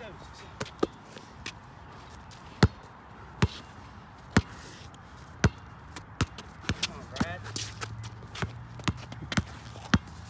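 A Wilson basketball bouncing on a concrete court: single sharp bounces about a second apart at first, then a quicker dribble of about two bounces a second in the second half.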